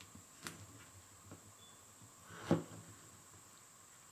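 Large knife cutting through the hard, russeted rind of a fully ripe Little Potato cucumber on a plastic cutting board: a few faint ticks, then one louder cut and knock of the blade about two and a half seconds in.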